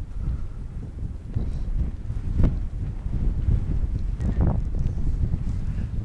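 Wind buffeting the microphone as a steady low rumble, with a few knocks, the loudest about two and a half seconds in.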